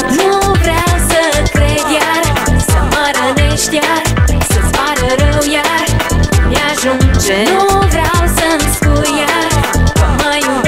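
Pop/dance music with a steady electronic beat under a lead melody that slides and bends in pitch.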